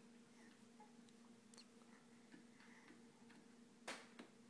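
Near silence: room tone with a faint steady hum and a few faint clicks from a baby's hands on a plastic toy activity table, with one sharper click just before the end.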